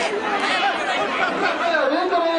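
A large crowd of spectators shouting and chattering, many voices overlapping without a break.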